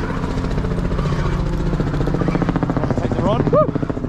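Boat's outboard engine running steadily at idle after being put in neutral, with an even pulsing note. A short voice-like call that rises and falls in pitch comes near the end.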